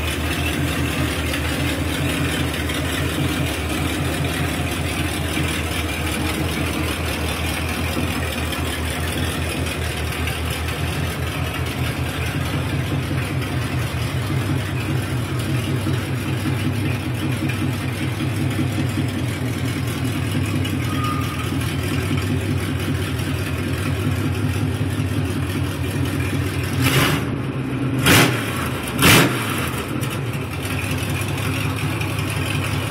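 1974 Chevrolet C10 pickup's engine idling with a steady pulse through open exhaust headers, sounding nasty. Near the end, three short, loud blasts as the throttle is blipped.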